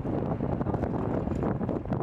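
Wind buffeting the microphone in a rough low rumble, over a small motorbike engine running at walking pace close by.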